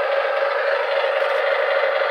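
Toy semi truck's electronic engine sound effect playing from its small speaker: a steady buzzy drone at one level.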